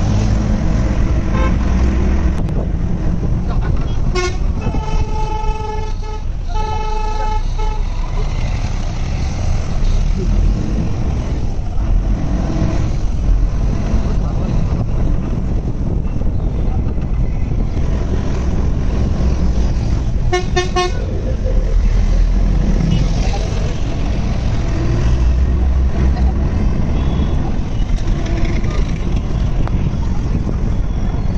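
Road traffic with a constant heavy low rumble; a vehicle horn sounds two long blasts from about four seconds in, and around twenty seconds in a horn gives a quick string of short beeps.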